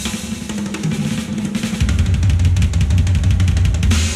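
Drum kit played fast and dense, with snare rolls over bass drum, in an asymmetrical avant-garde jazz piece. From about two seconds in, the low end gets heavier and louder. A steady low tone runs underneath.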